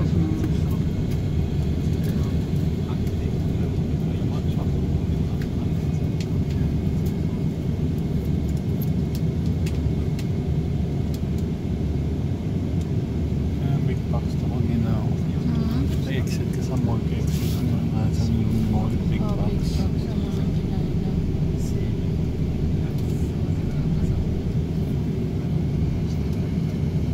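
City bus running slowly, heard from inside the cabin: a steady low engine and road rumble, with faint voices in the background.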